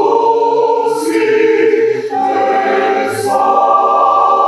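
Mixed choir of women's and men's voices singing sustained chords, moving to a new chord about halfway through and again near the end.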